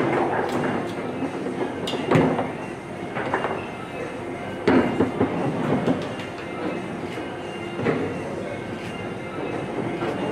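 Rosengart foosball table in fast play: the ball and plastic players knocking and clacking at irregular moments over a steady rattle of the rods. The sharpest hits come about two seconds in and in a cluster around five seconds in.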